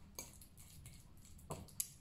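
Metal fork mashing avocado in a ceramic bowl: a few faint clicks of the fork against the bowl, one just after the start and two near the end.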